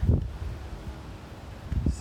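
Wind buffeting the microphone, an uneven low rumble, with faint rustling behind it.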